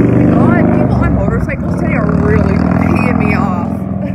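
Street traffic: a motor vehicle's engine running close by as a steady low hum, with voices over it.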